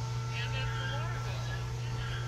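Faint, indistinct voices over a steady low hum.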